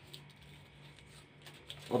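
Quiet room with a faint steady low hum and a few soft rustles of a paper card being handled.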